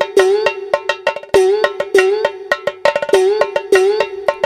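Folk dance music for a kummi kolattam dance: quick sharp percussion strikes, about four to five a second, over a steady pitched note that swoops up again and again.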